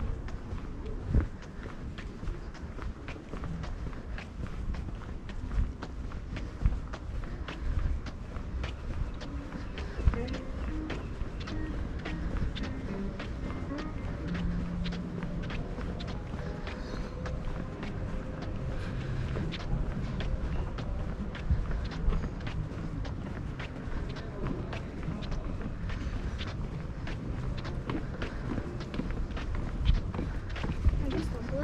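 Footsteps of a person walking at a steady pace on a paved path, about two steps a second. Faint voices and street sounds run underneath.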